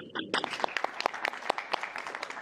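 A small audience clapping, a scattered patter of individual claps.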